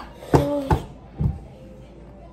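A boy's short pained vocal cry, held on one pitch, then a brief low grunt, a reaction to the burn of very spicy food.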